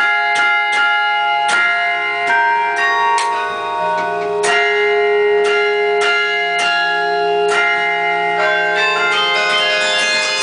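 Carillon bells played from the baton keyboard: a slow melody of struck bell notes, about one or two a second, each ringing on and overlapping the next.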